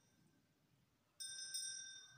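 Altar bell struck twice in quick succession about a second in, its clear metallic ring fading slowly.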